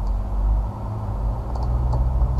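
Steady low background rumble with a faint constant hum, and a few faint clicks, typical of a computer mouse, about one and a half seconds in.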